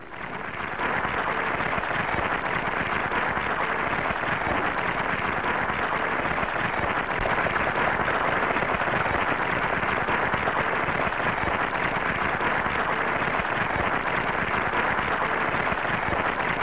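Audience applauding: a dense, steady clatter of many hands clapping that swells up within the first second and holds.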